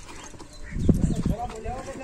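A burst of low thumps and rumble about a second in, the loudest thing here, then a man's voice talking.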